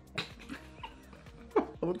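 Short bursts of laughter over soft background music, the laughs growing louder in the second half.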